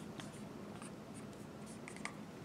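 Dry-erase marker writing on a handheld whiteboard: a few faint, short strokes of the felt tip across the board's surface.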